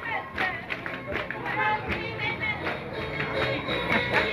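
Live Bolivian folk music played by a festival band: a steady percussion beat about twice a second under a melody line, with voices mixed in.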